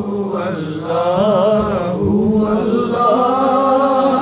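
Male voice chanting a hamd, a devotional hymn in praise of God, in drawn-out phrases with wavering, ornamented pitch and a brief break about two seconds in.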